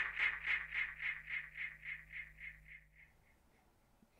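A dub echo tail: one short sound repeating about four times a second through a delay effect, each repeat quieter, fading out and gone about three seconds in as the tune ends.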